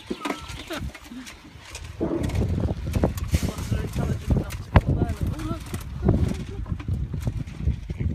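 A litter of piglets feeding at a metal trough: short grunts and squeals over a dense bustle of snuffling and trampling, with sharp knocks against the trough. The loudest knock comes a little before five seconds in.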